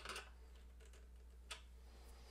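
Near silence over a steady low hum, broken by two small clicks, one at the start and a sharper one about one and a half seconds in, from hands handling an electric guitar body while pressing a vinyl stripe sticker onto it.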